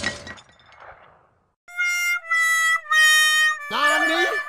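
A crash fading out, then after a short gap a music-like sound effect of three held notes, each a little lower than the last, followed by rising swooping sounds near the end.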